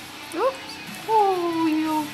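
A cat meowing: a short rising call about half a second in, then a longer, slowly falling meow.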